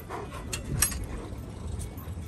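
A chain-link gate and its metal latch being handled: a few sharp metallic clicks and rattles over a low rumble.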